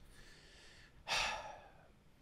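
A man breathes out audibly into a close microphone, one short exhale about a second in that fades within half a second, between stretches of quiet.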